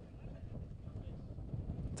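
Low, uneven wind rumble on an outdoor microphone, fairly quiet.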